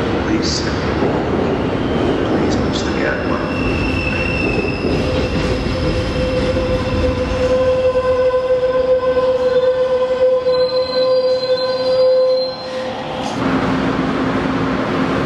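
Amtrak passenger train cars rolling past at close range, rumbling. From about five seconds in, a steady high-pitched wheel squeal of several ringing tones comes in, then cuts off abruptly near the end.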